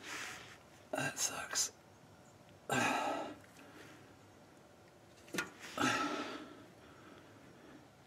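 A man muttering under his breath and exhaling in four short, breathy bursts, with no clear words.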